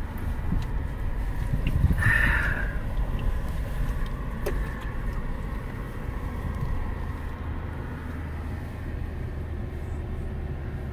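Inside the cab of a Toyota 4Runner driving slowly on a gravel washboard road: a steady low rumble of tyres on gravel and engine. A brief higher-pitched sound comes about two seconds in, with a few light clicks, and the rumble eases off somewhat in the second half.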